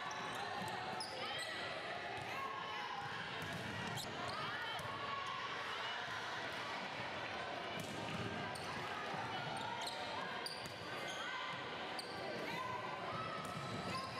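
Indoor volleyball court sound: many players' voices calling and chattering, with sharp slaps of volleyballs being struck and hitting the floor every second or two.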